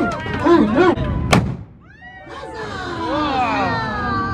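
A crowd of children shouting and calling out together in high voices, with a single sharp crack a little over a second in and a brief dip before the group cry swells again.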